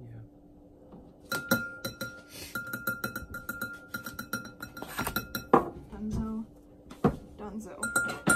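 A metal spoon clinking against a glass mixing bowl while a sauce is stirred, giving a rapid, irregular run of light clinks that begins about a second in.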